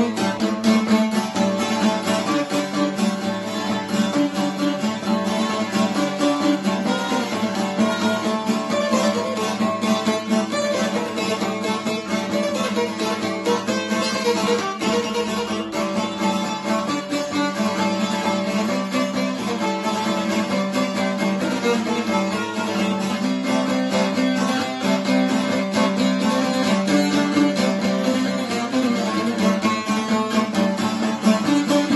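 Two šargijas, Bosnian long-necked lutes, playing a kolo dance tune together: rapid, unbroken plucking over a steady low note.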